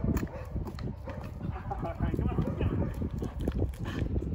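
A person's footsteps and a German Shepherd's paws on asphalt while the dog is walked on a leash: irregular clicks and scuffs throughout, over a steady low rumble.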